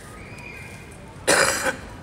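A man coughs once, a short loud cough about a second and a half in.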